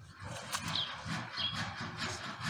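Two short bird chirps over a faint outdoor background, with light handling sounds and a small click as a tortoise shell is set down on leafy ground.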